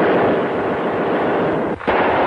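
Machine-gun fire: a long burst that starts sharply and holds steady for almost two seconds, then a second burst begins near the end.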